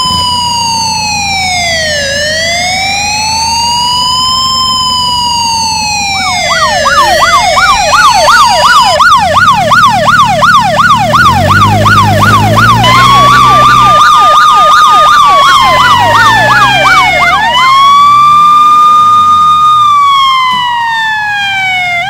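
Loud electronic emergency-vehicle siren. It opens with a slow rising and falling wail, is joined about six seconds in by a fast yelp of several sweeps a second, and near the end rises into long held tones that slowly fall away.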